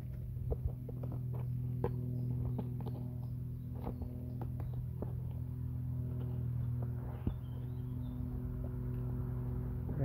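Light scratches, clicks and rustles of a kitten moving about inside a fabric pet carrier, over a steady low hum.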